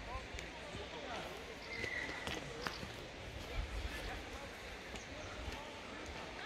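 Faint voices in the background over a steady low rumble, with a few light taps.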